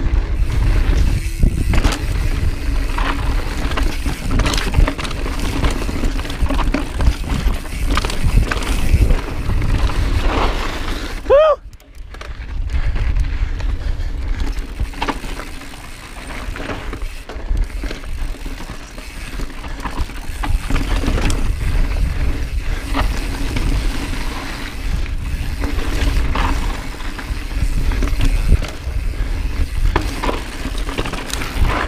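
Mountain bike riding fast over rocky, gravelly singletrack, heard from a body-mounted camera: steady wind rumble on the microphone with tyres crunching over rock and the bike rattling and clicking. About eleven seconds in, the noise briefly drops and a short squeak sounds.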